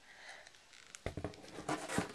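Cardboard being chewed and bitten: quiet at first, then from about a second in a few sharp crunchy clicks and a papery crunching burst, loudest at the very end.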